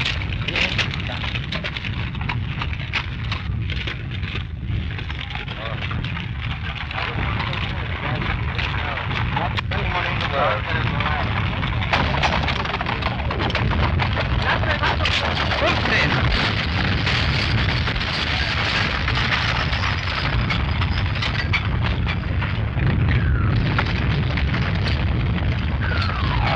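Old film soundtrack of a battlefield at night: a continuous rumble and crackle of distant shelling, growing somewhat louder about twelve seconds in, with indistinct voices mixed in.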